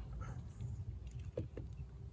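Faint small clicks and rustles of hands working a length of cord into a bowline knot, a couple of them about one and a half seconds in, over a low steady rumble of wind on the microphone.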